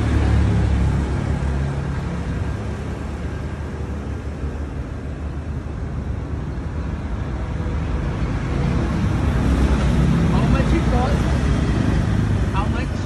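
Steady low rumble of road traffic, swelling about a second in and again over the last few seconds as vehicles pass.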